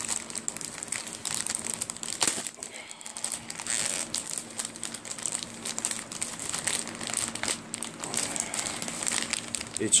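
Plastic package wrapping crinkling and rustling in irregular crackles as it is handled and opened, over a faint steady low hum.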